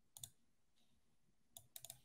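Near silence broken by a few faint, short clicks: one just after the start and a quick cluster of three or four near the end.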